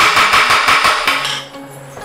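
Wooden judge's gavel banged rapidly on its block in a fast rattle of knocks, ringing over the top, stopping a little over a second in.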